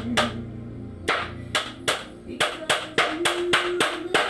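Hammer blows driving nails into lumber boards: about a dozen sharp strikes, spaced out at first, then coming about three a second in the second half. Background music plays underneath.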